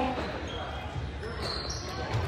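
Quiet basketball-game sound in a school gym: a ball dribbled on the hardwood court and players moving, with faint distant voices in the hall.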